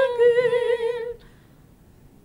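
Unaccompanied female singing of a Christian praise song: one long held note with vibrato that ends about a second in, then a brief pause between phrases.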